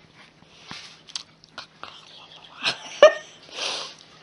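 A person's short voiced sound of distaste about three seconds in, followed by a breathy exhale, amid a few small clicks; a faint steady hum underneath.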